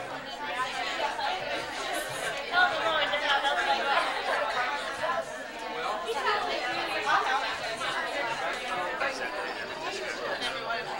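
Many people talking at once: a steady hubbub of overlapping conversation in a room, with no single voice clear.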